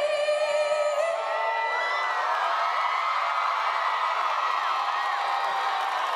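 A large festival crowd cheers and screams at the end of a song, with many overlapping whoops. A last held note fades out about a second in.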